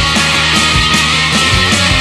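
Loud heavy space-rock music from a full band: a dense wall of distorted guitar over bass, with a steady drum beat of about two kick-drum hits a second.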